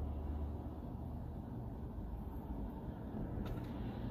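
Low, steady rumble of a car cabin, with no distinct events.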